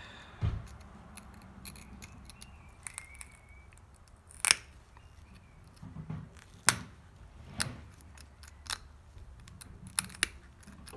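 Obsidian being pressure flaked with a copper-tipped flaker: a series of sharp, short clicks as small flakes snap off the edge, the loudest about four and a half seconds in and again near seven seconds. A dull knock about half a second in.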